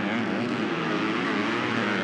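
Several MX2 motocross bikes racing through a dirt corner together, their engines running on and revving in a steady, dense drone.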